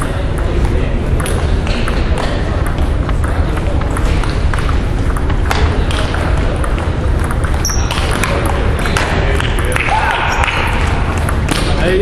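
Table tennis rally: the ball clicking sharply off the paddles and the table, many times over, in a large gymnasium hall. Voices carry in the background.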